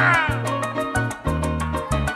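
Live joropo (música llanera) band playing between sung verses: steady bass notes under a fast, even maraca rhythm with harp. A brief wavering vocal cry into the microphone rises and falls at the very start.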